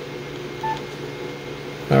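Yaesu FT-991A transceiver giving a single short beep as a front-panel key is pressed to store the frequency in memory, over a steady low hum.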